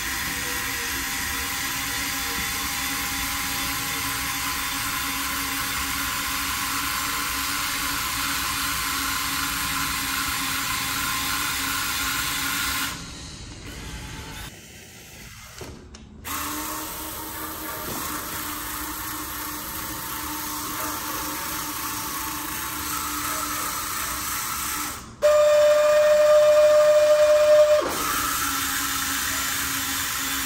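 Small electric gear motors of a cardboard model straddle carrier running with a steady whine. About halfway through the sound drops away and one tone falls as a motor winds down. Near the end a louder, higher-pitched whine runs for about three seconds, then the steady whine returns.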